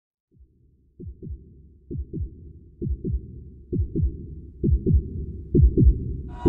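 Heartbeat sound effect: paired low thumps, a lub-dub about once a second, growing louder.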